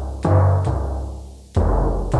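Sampled timpani from a KAT GigCat 2 sound module, played from a MalletKAT electronic mallet controller: three low struck drum notes, each ringing and fading.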